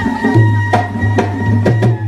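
Manipuri folk music: drums, the pung barrel drum and a large frame drum, struck in about five uneven strokes over a steady low drone and a held higher tone.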